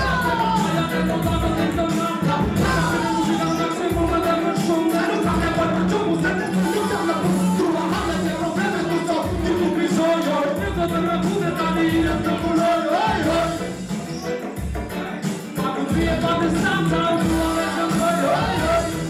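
Live hip hop through a PA: a DJ's programmed beat with a steady kick drum, with rappers rapping over it on microphones.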